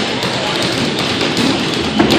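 Steady boxing-gym background noise during a sparring round: a murmur of voices with light taps of feet and gloves.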